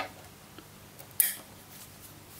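An RJ45 Ethernet plug being pushed into a PoE port on a network video recorder: a sharp click at the start, a faint tick about a second in, then a short scraping rustle of the plug and cable being handled.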